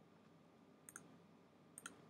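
Near silence, with a few faint sharp clicks about halfway through and one just before the end.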